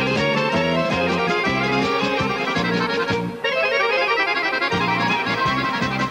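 Instrumental break of a Macedonian folk-pop song played live by a band with accordion, clarinet and flute over a pulsing bass line. The sound thins briefly about three seconds in.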